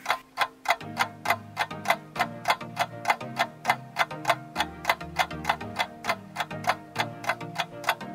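Countdown-timer clock sound effect ticking steadily and quickly, over soft background music.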